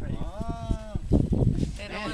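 A person's drawn-out vocal exclamation, a single held 'ooh' of under a second whose pitch rises slightly and falls back, followed by brief murmured voices.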